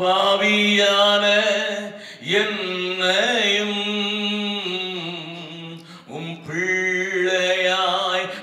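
A man singing a worship song solo, holding long sustained notes, with short breaks between phrases about two and six seconds in.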